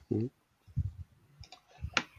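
A few short, low voice sounds, like hesitation murmurs, with several sharp clicks between them; the loudest click comes at the very end.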